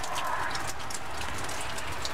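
Steady rain in strong wind: a continuous hiss dotted with many small drop ticks, over a low rumble of wind.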